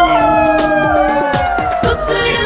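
A long, drawn-out howl-like animal call, held about two seconds and slowly falling in pitch, over a children's song backing track with a steady drum beat.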